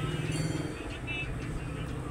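Low, steady engine hum with faint voices of people talking in the background.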